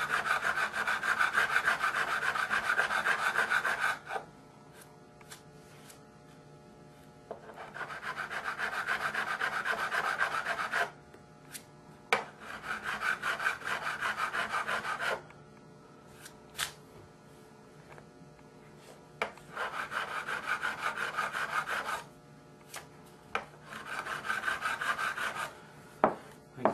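A StewMac curved fret-crowning file rasping back and forth on nickel fret wire, rounding the flat landing left on top of the frets after levelling. There are five spells of quick filing strokes with short pauses between them, and a few light clicks in the pauses.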